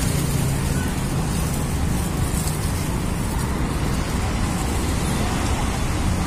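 Steady outdoor background noise: an even low rumble with hiss above it, holding one level throughout with no distinct events.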